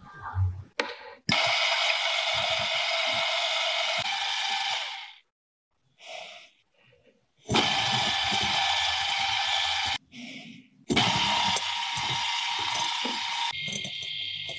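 Electric hand mixer running in three bursts of a few seconds each, its twin beaters whipping egg whites in a glass bowl to stiff-peak meringue. A couple of soft knocks come just before the first burst.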